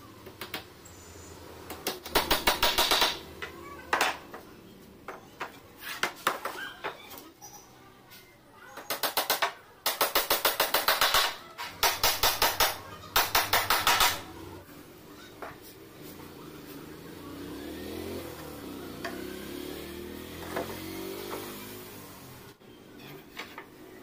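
Pneumatic nail gun firing in rapid bursts of about ten shots a second, four bursts in all with a few single shots between, fastening plywood panels together.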